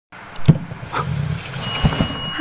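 Thumps and knocks of a cardboard box being handled and set down on the floor, the loudest about half a second in and another near the end. A steady high electronic tone starts after about a second and a half.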